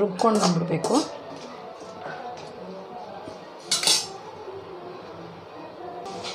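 Perforated metal spoon scraping and clinking against an aluminium kadai as raw chicken pieces are stirred, with one louder metallic clatter about four seconds in.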